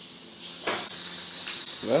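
Small electric drive motors of a mecanum-wheel rover whirring with a thin high whine, starting about two-thirds of a second in.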